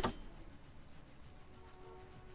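A toothbrush scrubbing teeth: a quick run of faint, even brushing strokes.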